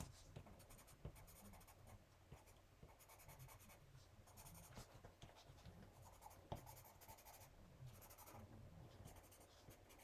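Faint scratching of a white pastel pencil stroking across holographic printable vinyl sticker paper, in repeated short bursts, with a couple of light ticks from the pencil meeting the card.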